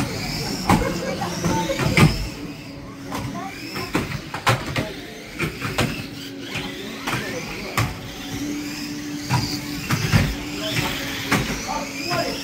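Radio-controlled model stock cars racing: small motors whining up and down, with many short knocks as the cars bump one another and the fence barrier, over background voices.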